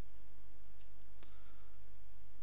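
About four sharp computer mouse and keyboard clicks in quick succession around the middle, over a steady low electrical hum.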